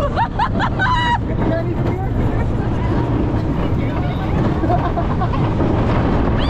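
Wind rushing over the microphone of a rider on the Cheetah Hunt roller coaster in motion, with riders' screams and whoops in the first second or so and fainter yells later.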